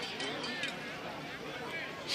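Faint voices from around a football field: players and sideline people talking at a distance, a low murmur of speech.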